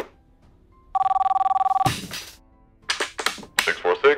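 A click, then a mobile phone ringing with a two-tone trilling ring for about a second, cut off by a short rush of noise.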